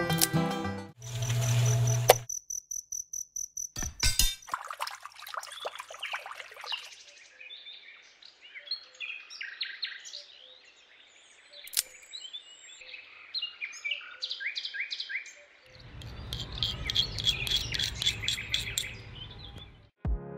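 Birds chirping with short, repeated calls, loudest in the middle and latter part. A low hum and a quick run of clicks come early, and a low rumble joins near the end.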